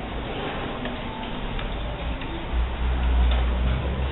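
Scattered light clicks of abacus beads being flicked by children working sums, with a low rumble joining about halfway through.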